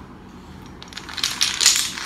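A long row of toy dominoes toppling in a chain across a hard floor. After about a second it becomes a rapid run of sharp clicks that grows louder as the blocks knock each other down.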